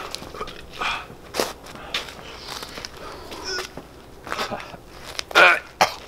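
Footsteps and shuffling, with scattered small knocks, and a man's short, loud vocal outburst about five and a half seconds in.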